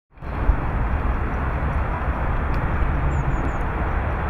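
Outdoor background noise: a steady low rumble with hiss, fading in just after the start. A few faint high chirps come near the end.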